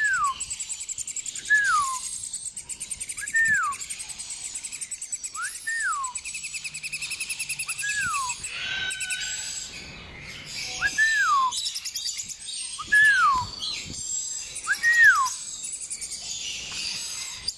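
Red-flanked lorikeets calling in a small, high voice: a short whistled note that rises and then falls, repeated eight times about every two seconds, over a continuous thin, fast chatter.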